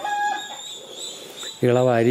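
A short, steady-pitched bird call at the very start, lasting about half a second, over a faint steady background; a man's voice comes in near the end.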